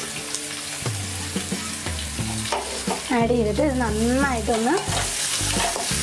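Sliced onions, green chillies and whole spices sizzling steadily in hot oil in a pan while being stirred with a spatula.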